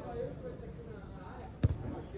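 A football being kicked: one sharp thud near the end, over players' voices in the background.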